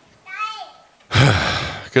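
A loud sigh, a breath pushed straight into a handheld microphone, lasting most of a second from about halfway through. Before it comes a short vocal sound that falls in pitch, and a man's voice starts a word at the very end.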